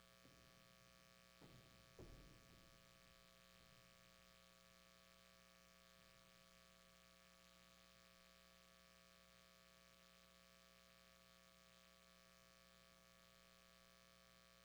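Near silence with a steady electrical hum, and two faint knocks about a second and a half and two seconds in.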